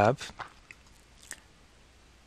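A man's voice finishing a word, then a few faint computer mouse clicks spread over the next second or so, with only low room tone between them.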